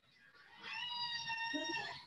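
A child's voice, faint and high-pitched, held on one steady note for over a second, heard over a video call, as a student calls out an answer.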